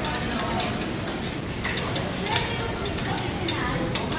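Meat sizzling on a tabletop Korean barbecue grill, with scattered light clicks and scrapes of metal tongs and scissors as the pieces are turned and cut.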